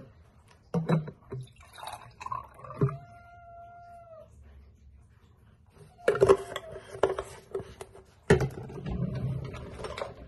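Cold brew coffee poured from a bottle into a glass, splashing and gurgling: a first stretch about six seconds in, then a louder stretch from about eight seconds. A little earlier, around three seconds in, a cat meows once in a single drawn-out call.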